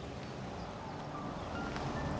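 Quiet background score music over the low engine and tyre sound of a BMW X5 SUV driving slowly closer, growing slightly louder toward the end.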